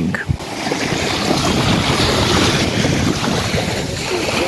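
Steady wind buffeting the microphone over small waves lapping at a sandy shore.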